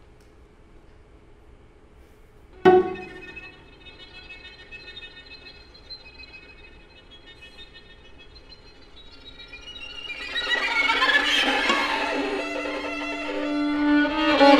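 String quartet of two violins, viola and cello playing contemporary music. Near-silence gives way to a sudden sharp attack about three seconds in, then thin high sustained tones. Near the end these swell into a loud, dense, scratchy texture.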